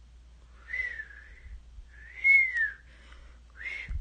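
A person whistling three notes, each a single pitch that glides, with breath audible around the tone. The first note lasts about a second and dips, the second rises and falls and is the loudest, and the third is short, near the end.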